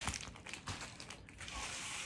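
Faint crinkling and rustling of a plastic padded mailer being handled and opened, with small scattered crackles.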